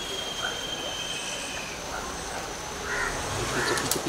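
Crows cawing a few times over outdoor background noise, with a vehicle's low engine sound coming in near the end.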